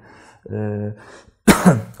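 A man's brief held hesitation sound in mid-sentence, then a loud, short throat clearing about one and a half seconds in.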